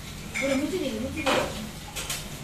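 Metal utensils clinking and scraping at a dosa griddle, with the loudest clank about one and a quarter seconds in.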